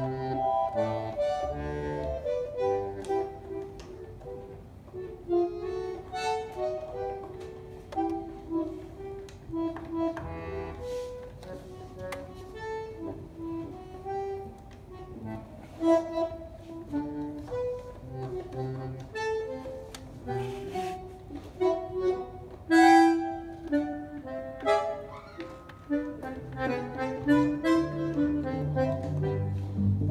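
Bandoneón playing a slow, singing melodic line in a zamba, note after note in the middle register. Low notes grow fuller near the end.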